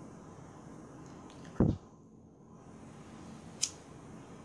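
Handling noise at a fly-tying bench over a faint steady hiss: a dull thump a little over a second in, and a short sharp click near the end.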